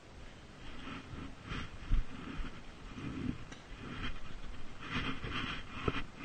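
Hard breathing and footfalls of a person running on grass, picked up close by a chest-mounted camera, with a louder thump about two seconds in.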